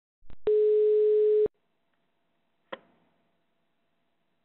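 Telephone ringing tone heard over the caller's phone line: a short click, one steady ring tone lasting about a second, then a sharp click about two and a half seconds in. The ringing tone means the call has been dialled and is ringing at the other end, not yet answered.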